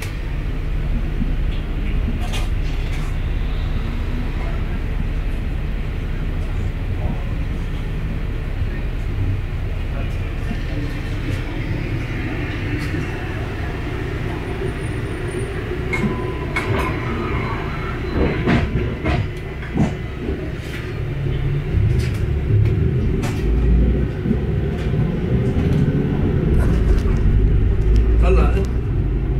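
Steady engine and road rumble heard from inside a city bus, with scattered rattles and knocks from the cabin. The low rumble grows louder over the last few seconds.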